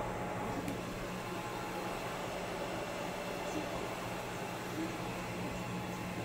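Steady machine hum and hiss from running equipment, with a few faint clicks.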